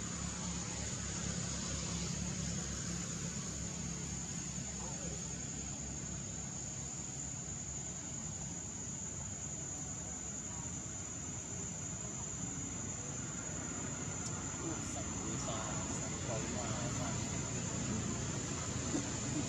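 Outdoor ambience: a steady high-pitched insect tone under a low, steady engine-like rumble, slightly louder near the end.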